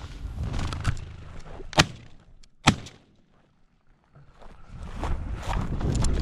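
Footsteps and dry brush crackling as boots push through desert scrub, with two sharp cracks about a second apart roughly two seconds in. A short lull follows, then the walking and brush noise pick up again and grow louder.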